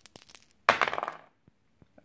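Two plastic six-sided dice shaken with quick light clicks, then thrown onto a terrain board, landing with one sharp clatter a little under a second in that dies away quickly.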